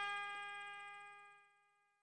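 A single held brass-instrument note, trumpet-like, dying away steadily to nothing in the first second and a half.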